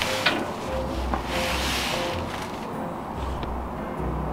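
Background music with a steady, pulsing bass beat, and a brief hiss about a second and a half in.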